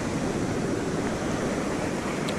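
Ocean surf washing up the beach, a steady rush of breaking waves and foam.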